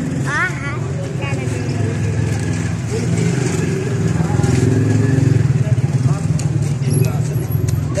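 A steady low engine drone that grows louder past the middle, with scattered voices over it.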